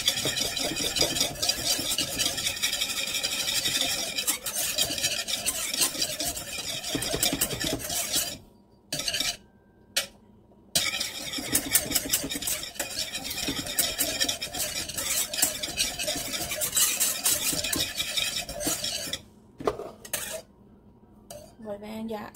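Wire whisk beating rapidly against the sides and bottom of an enamel saucepan, stirring a thickening vanilla custard on the heat so it doesn't stick. The whisking pauses about 8 seconds in, starts again a couple of seconds later, and stops a few seconds before the end.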